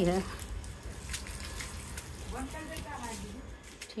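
Water from a garden hose running and splashing on a wet tiled roof floor, a steady wash of noise with a few small knocks.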